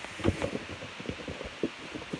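Handling noise: irregular rustling with a quick run of light clicks and knocks.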